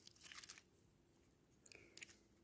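Faint crunching and scraping of dry leaves and gravel as a hand picks a small piece of petrified wood up off the ground, in short scratchy bits during the first half-second and once more shortly before the end.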